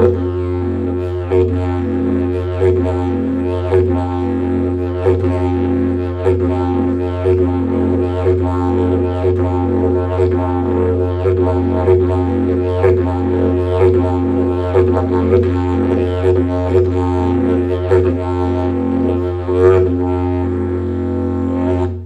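Didgeridoo played in a continuous low drone, with rhythmic overtone and voice pulses about twice a second.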